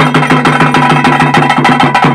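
Traditional ritual drumming: fast, even drumbeats, about eight a second, with a steady high note held above them throughout.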